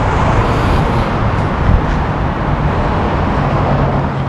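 Road traffic on a street: vehicles running past in a steady rumble, with a low engine hum coming in near the end.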